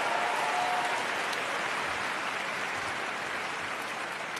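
Audience applauding steadily, the clapping slowly dying down.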